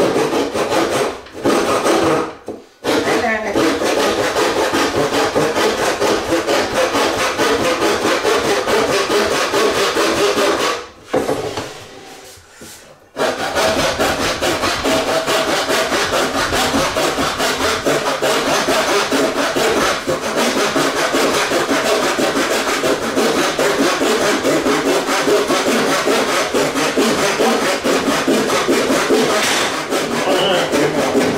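Handsaw cutting through a skirting board, steady back-and-forth rasping strokes. The sawing stops briefly about two seconds in and again for a couple of seconds a little before the middle, then runs on.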